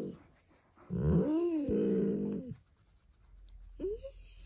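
Alaskan Malamute "talking": one drawn-out, moaning vocalization about a second in, lasting about a second and a half and rising then falling in pitch. A short rising whine follows near the end. This is the breed's attention-seeking vocalizing.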